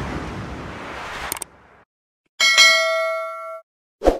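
Sound effects of a subscribe-button animation: a fading whoosh ending in a sharp click about a second and a half in, then, after a brief silence, a bright bell ding that rings for about a second and cuts off suddenly.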